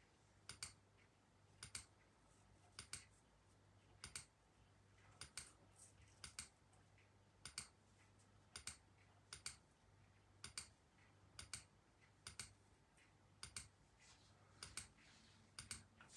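Faint, sharp computer clicks about once a second, often as quick pairs, repeatedly pressing the Generate button of an online random number generator.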